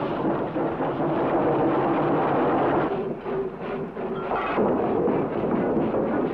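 Steam locomotive starting off, a loud, dense rumble and rush of noise from the engine and its running gear.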